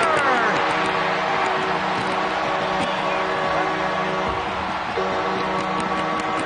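Arena goal horn sounding one long, steady chord over a cheering crowd, signalling a home-team goal.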